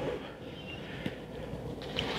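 Quiet background noise with a single faint click about a second in.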